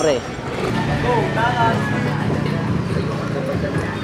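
Voices, a few short bits of talk or calls, over a steady low hum.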